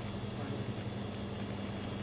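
Steady low hum over a faint even hiss, unchanging throughout: the background room tone of a shop.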